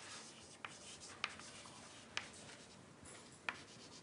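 Chalk writing on a blackboard: a faint scratching of the chalk, broken by four short, sharp taps as the chalk strikes the board at the start of strokes.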